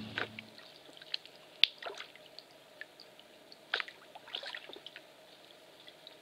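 Kayak paddle dipping into calm water: a few scattered light splashes and drips over a faint hiss, after background music fades out in the first half second.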